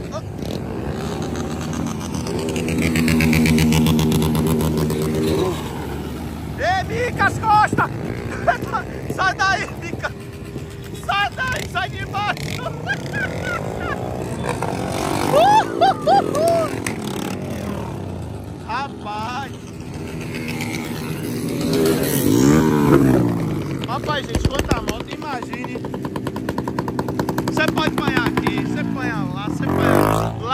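Motorcycles running and revving as they pass, engine pitch climbing and falling, with a crowd's voices and shouts over them.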